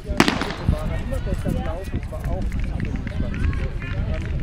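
A starting pistol fires once, a sharp crack just after the start, sending off a women's 1000 m race; voices carry on around it.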